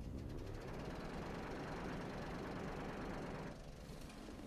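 Film projector running with a fast, steady mechanical clatter as a new reel starts, easing off about three and a half seconds in.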